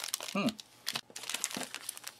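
Crinkling of a foil-laminate drink-powder sachet as it is picked up and handled, a run of quick, irregular crackles.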